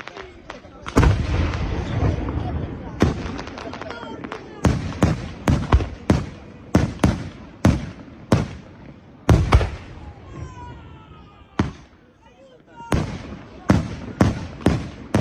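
Aerial fireworks shells bursting: a loud bang about a second in with crackling after it, then a string of sharp reports in quick succession, coming thicker near the end.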